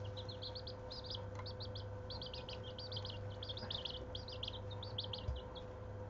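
Young chicks peeping continuously in quick, high-pitched chirps, over a steady low hum.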